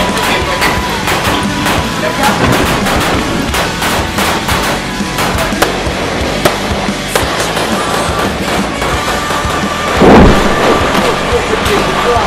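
Rifle fire: many sharp shots, singly and in quick clusters, under background music. A louder boom comes about ten seconds in.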